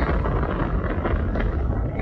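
Steady low rumble of a car heard from inside its cabin.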